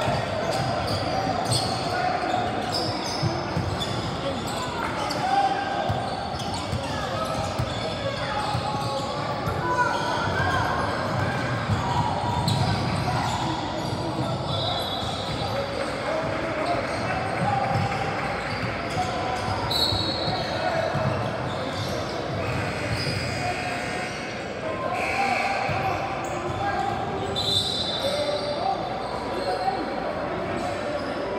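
Basketball game in a large echoing gym: a ball bouncing on the hardwood court, sneakers squeaking a few times, and players and spectators calling out throughout.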